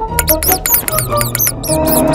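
A quick run of short, high-pitched cartoon squeaks for a little mouse character, over background music with a low bass line.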